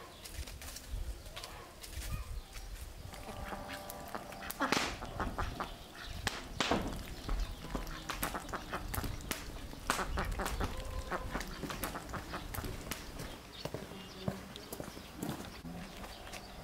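Domestic ducks quacking as they dabble in a muddy puddle, with many quick clicks from their bills working the water and mud.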